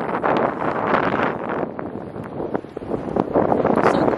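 Wind buffeting the microphone: a loud, gusting rush of noise that rises and falls, easing a little in the second half.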